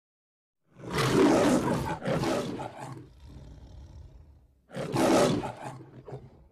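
The Metro-Goldwyn-Mayer logo lion roar: a lion roars twice in quick succession about a second in, growls low for a moment, then roars once more near the end.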